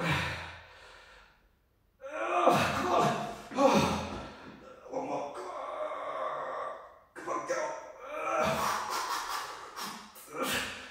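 A man's strained groans and gasps as he struggles through dumbbell floor press reps to failure, starting with a sudden sharp exhale and then, from about two seconds in, a string of long drawn-out wordless vocal strains.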